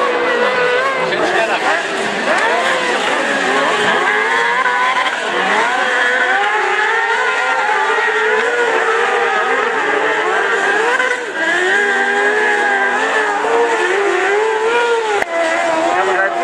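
Several 600 cc crosscarts with motorcycle engines racing on a dirt track. Their engine notes overlap, each rising and falling as the carts rev up and back off through the bends.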